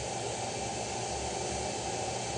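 Steady hiss from cooking on a stovetop, with food in a pan on the burner.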